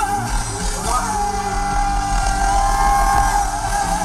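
Live rock band playing loudly through the stage PA, with singing; a long note is held from about a second in.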